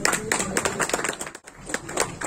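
A group of people clapping, quick uneven claps overlapping, with a brief gap about a second and a half in.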